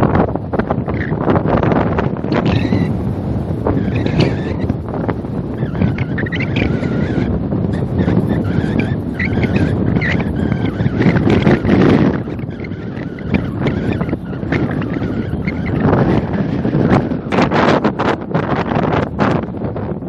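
Wind buffeting the microphone in uneven gusts, a loud rumbling noise. Faint pitched calls rise and fall in the background during the first half.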